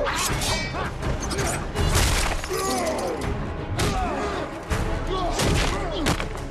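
Film battle soundtrack: a string of heavy hits and shattering crashes, about five or six in six seconds, over an orchestral score, with short grunts and cries from the fighters.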